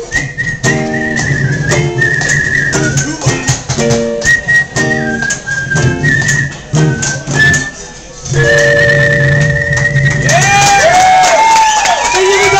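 A woman whistling a melody into a microphone over electric guitar notes, ending on a long held whistle over a held chord. Near the end the audience cheers and whoops.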